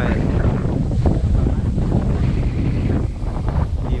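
Strong wind buffeting the microphone: a loud, gusty, low rumble.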